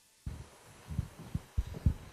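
Dead silence that cuts to open room sound about a quarter second in, then a string of irregular low thuds and bumps picked up by a microphone.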